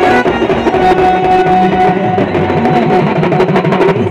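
Loud Adivasi band music: a fast, busy drum beat under a held melody line that plays without a break.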